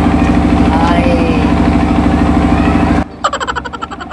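An engine idling steadily with a low, even throb, faint voices over it. About three seconds in it cuts out abruptly, and a brief thinner sound with a quick ticking rhythm takes its place.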